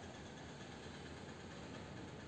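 Faint, steady background noise: room tone with no distinct sound.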